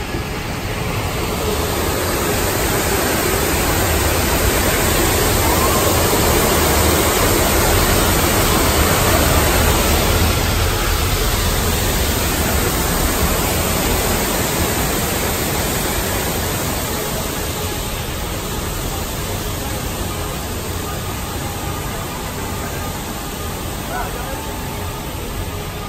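Steady rushing ride noise from the moving monorail train, swelling over the first several seconds and then slowly fading.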